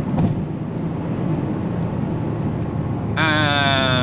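In-cabin drone of an Audi RS7 C8's twin-turbo V8 with tyre and wind noise while the car slows down at high speed. Near the end a drawn-out voice enters, its pitch falling slightly.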